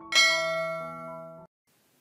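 Animated subscribe-button sound effect: a short click, then a bright bell chime with several tones ringing together that fades over about a second and a half and then cuts off suddenly.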